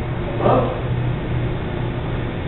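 A steady low hum that pulses slightly, with a brief short sound about half a second in.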